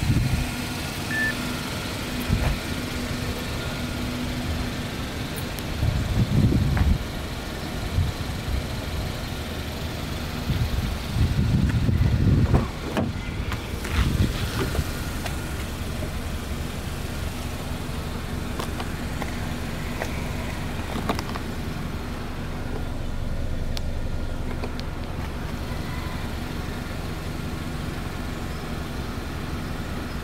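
Hyundai Veloster 1.6 GDI engine idling steadily with a low, even hum. Twice, about six seconds in and again around eleven to twelve seconds, louder low rumbles of wind or handling on the microphone rise over it.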